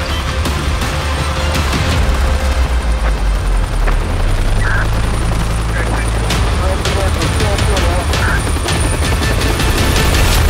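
Helicopter flying, a steady low rotor and engine drone, with the rhythmic chop of the rotor blades coming through more clearly in the second half.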